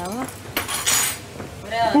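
Gift packaging being handled on a table: a brief rustle about half a second in, between bits of speech.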